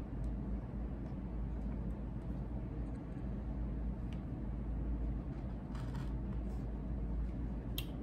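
Fiskars rotary cutter rolling through folded fabric against a cutting mat, slicing slits, over a steady low hum, with a couple of faint clicks near the end.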